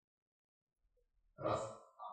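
A person sighs once, a breathy, slightly voiced sound that starts about halfway through and trails off.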